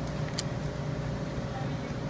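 Steady low room hum, with one faint click of cards being handled about half a second in.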